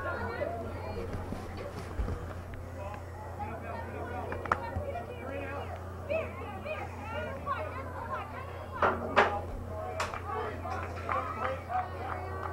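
Girls' voices calling and chattering across a soccer field during play, several at once and at a distance, over a steady low hum. A couple of louder calls come about nine seconds in.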